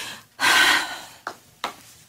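A woman crying: a loud gasping breath in about half a second in, then two short sniffs.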